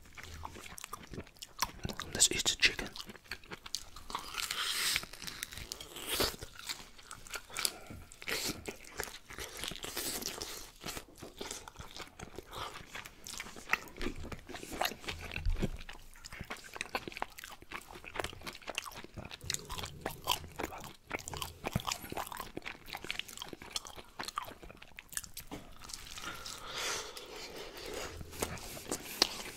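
Close-miked open-mouth chewing and lip smacking while biting into and tearing baked chicken leg meat, a dense irregular stream of clicks and smacks.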